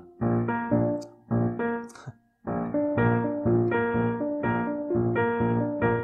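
Yamaha digital piano playing a syncopated ragtime triad exercise with both hands: chords repeated in a regular bouncing rhythm, with a short break about two seconds in before the pattern starts again in a new key, going round the cycle of fourths.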